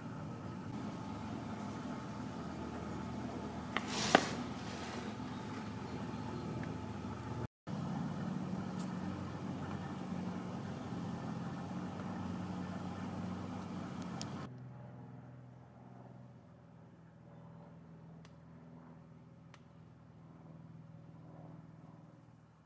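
A steady low hum with one sharp click about four seconds in; the hum drops suddenly to a much quieter level about two-thirds of the way through.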